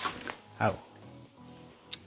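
Aluminium foil crinkling briefly as a gloved hand presses it down over a dish, with a single sharp click near the end.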